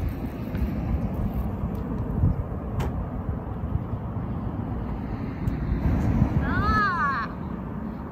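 Steady low rumble of road traffic passing on the adjacent road, with wind noise on the microphone. About six and a half seconds in comes a short, high, wavering call.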